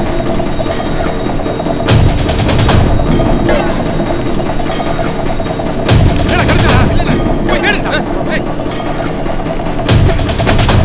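Action-film soundtrack: background music under repeated gunfire-like bangs, with heavy booming impacts about two seconds in, about six seconds in and at the very end.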